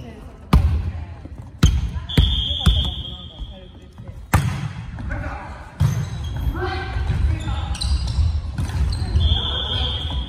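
A volleyball being struck and played in an echoing gym: about six sharp slaps of hand and ball within the first six seconds, each ringing briefly in the hall. Players' voices call out in the second half, and a high, steady squeal sounds twice.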